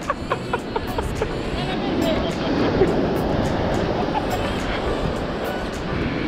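Steady rush of surf breaking on the beach, with faint voices and music in the distance.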